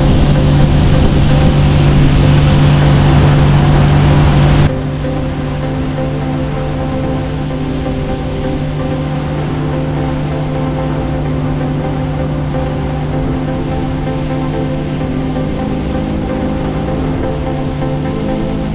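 Sea-Doo Switch pontoon boat running under way, its engine hum mixed with wind buffeting the microphone. About five seconds in this cuts off suddenly and background music takes over, with a fainter steady hum beneath.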